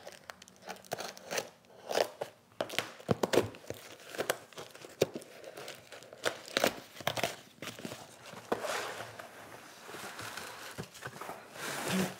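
A cardboard USPS Priority Mail shipping tube being torn and pulled open by hand, with irregular tearing, rustling and crinkling of paper and plastic. Near the end comes denser plastic-wrap crinkling as the wrapped roll of leather is drawn out.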